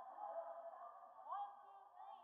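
Faint, muffled chatter of several voices, thin and boxy as if heard through a low-quality stream, with no words standing out.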